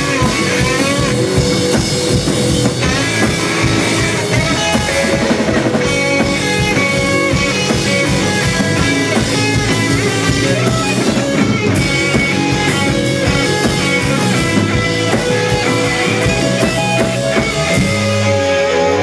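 Live rock band playing loud: distorted electric guitar over a fast, steady drum-kit beat. The drums stop right at the end, as the song finishes.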